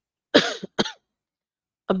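A person coughing twice in quick succession, a short cough and then a brief second one about half a second later.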